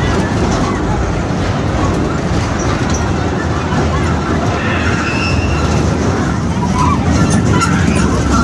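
Tilt-A-Whirl carnival ride running: a loud, steady low rumble of the ride's machinery and its spinning tub cars, with faint voices mixed in.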